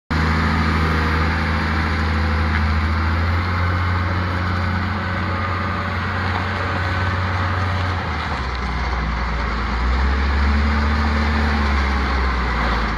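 Caterpillar IT28G wheel loader's diesel engine running steadily as the machine drives. The low engine note shifts pitch about eight seconds in.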